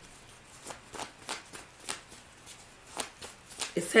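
A deck of tarot cards being shuffled by hand, heard as an irregular run of soft card slaps and flicks, a few per second.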